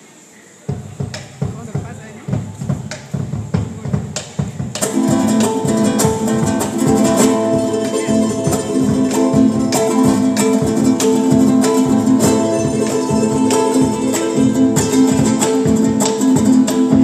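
Live Andean folk band starting a song: about a second in, strummed strings and drum strokes begin a rhythm, and about five seconds in the full band comes in loudly with held melody notes over the strumming and a large wooden drum played with sticks.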